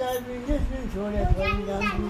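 Children's voices talking and calling, high-pitched, with one call drawn out for about a second near the end.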